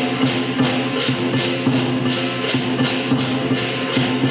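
Lion dance percussion band of drum, cymbals and gong, played live in a steady, driving rhythm with cymbal crashes about three times a second over a ringing low tone.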